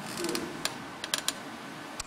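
Keys being pressed on a computer keyboard: a few sharp clicks, three of them in quick succession about a second in, as the lecture slides are advanced.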